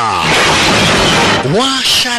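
Glass shattering: a burst of breaking glass lasting about a second and a half, as a window of the guard tower is shot out. A man's voice comes in near the end.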